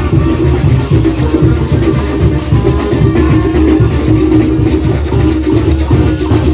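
Mexican brass band (banda) playing loudly, with sousaphones carrying the low line and cymbals and drums keeping the beat.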